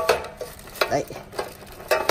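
Clear plastic bag crinkling and rustling as it is handled inside a bread maker's baking pan, in several short sharp crackles.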